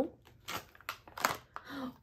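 A foil blind-bag packet being torn open and crinkled by hand: a few short rips and crackles.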